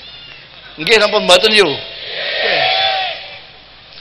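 A man's short vocal outburst, then audience laughter that swells and dies away, answering a joke from the stage.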